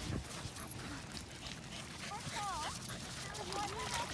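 Dogs and people on a beach, heard at a distance: a few short rising-and-falling whines from a dog over faint background voices and outdoor noise.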